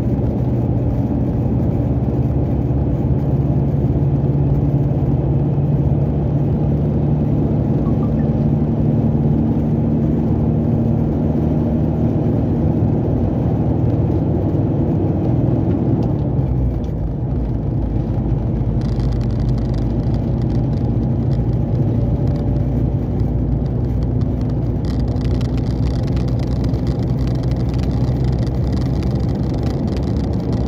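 Heavy truck's diesel engine and road noise heard from inside the cab while driving, a steady drone. About halfway through the engine note changes and the loudness briefly dips.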